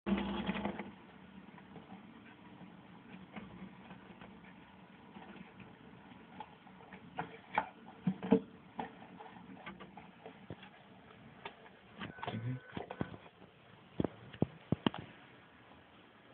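Scattered light clicks and knocks over quiet room noise, with a brief louder noise at the very start and a few sharper taps around the middle and again a couple of seconds before the end.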